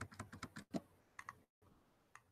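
Faint computer keyboard keystrokes: a quick run of light clicks in the first second, then two more a little after a second in.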